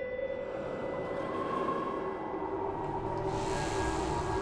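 Dark ambient horror-film score: a sustained drone of steady tones over a low rumble, with a hissing swell rising about three seconds in.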